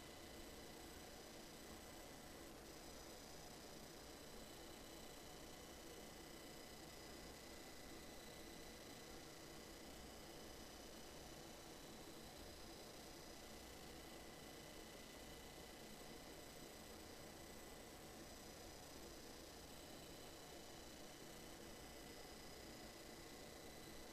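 Near silence: a faint steady hiss of room tone with thin, high, steady whines underneath.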